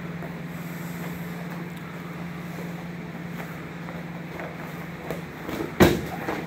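Steady low hum with faint scuffing of judo grapplers moving on a mat, a couple of light knocks about five seconds in, then one sharp thud near the end as a body hits the mat.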